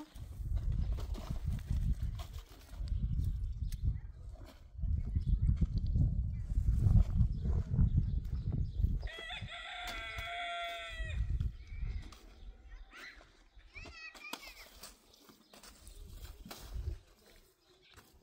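A rooster crows once, about nine seconds in, a single call lasting about two seconds, over a low rumble that comes and goes in gusts. A shorter pitched call follows a few seconds later.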